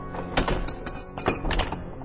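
A locked gate knocked and rattled, about six sharp thunks in quick succession, over a sustained dramatic music underscore.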